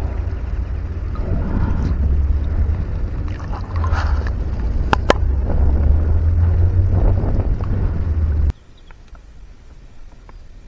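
Wind buffeting an outdoor microphone: a steady low rumble with a couple of sharp clicks about five seconds in. It cuts off abruptly about a second and a half before the end, leaving a much quieter outdoor background.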